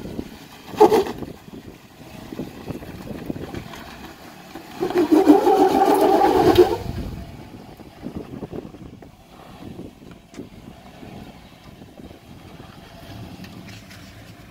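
Jeep Wrangler crawling up a slickrock ledge, its engine working under load. There is a sharp knock about a second in, and a loud, wavering whine that starts about five seconds in and lasts some two seconds.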